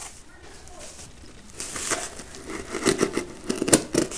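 A pocketknife blade cutting and scraping through packing tape on a cardboard box, with crinkling of tape and plastic. It is quiet at first, then comes a run of sharp scrapes and clicks in the last two seconds.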